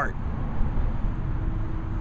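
A low, continuous rumble of outdoor background noise fills a pause in a man's speech, with a faint steady hum joining about halfway through.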